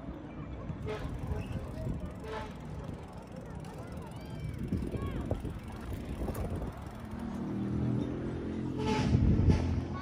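Outdoor crowd ambience: passers-by talking and calling out at various distances over a steady low rumble, with voices growing louder near the end.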